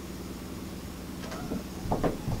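Steady low room hum, with a few faint soft handling sounds about a second and a half in.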